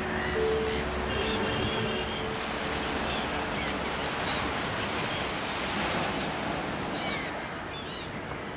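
Surf washing steadily on a beach, with short bird calls over it now and then. Soft, sustained music notes fade out about three seconds in.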